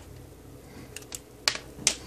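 A few light, sharp clicks and taps from handling bench test equipment and its leads, about four of them in the second half.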